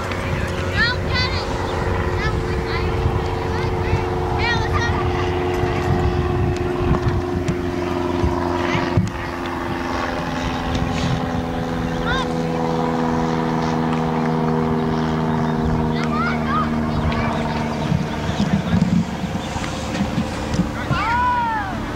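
A propeller aircraft droning overhead, its engine note sliding slowly down in pitch as it passes. Children's calls come and go over it.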